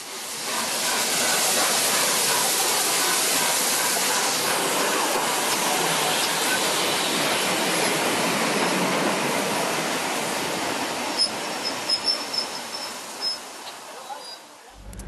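Peppercorn A1 Pacific steam locomotive Tornado passing through a station with a steady loud hiss of steam, the sound fading as the tender and coaches roll by, with a few short clicks near the end.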